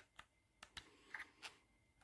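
Near silence broken by about six faint clicks and taps, spread across the two seconds, as the opened DJI FPV controller's plastic case is handled.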